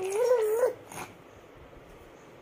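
Three-month-old baby cooing: one drawn-out, wavering vocal sound that rises a little in pitch and stops about two-thirds of a second in, followed by a brief short sound near one second.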